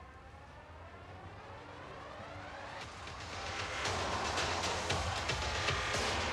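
Background music under a news graphic: a rising synthesized sweep builds over the first three seconds, then a louder music bed with a steady beat comes in about four seconds in.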